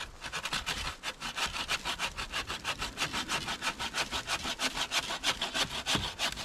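Wooden-framed bucksaw with a 21-inch Bahco dry-wood blade sawing through a branch in fast, even strokes, about five a second.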